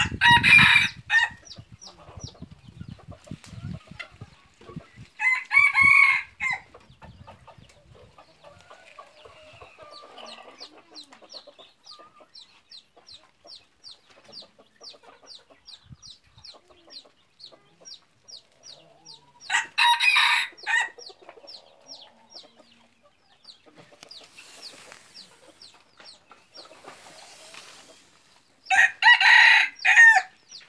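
Jungle fowl roosters crowing: four loud, short crows, one at the start, one about five seconds in, one about twenty seconds in and one near the end. Between the crows there is a steady run of short, faint, high chirps, about two or three a second.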